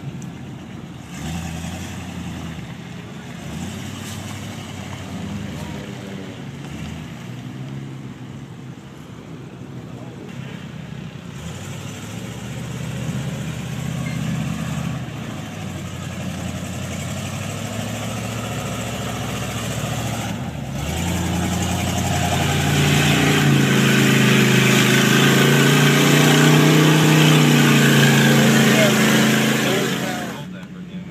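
Pickup truck engine working through deep mud, revving up and down, growing much louder and working hardest over the last several seconds.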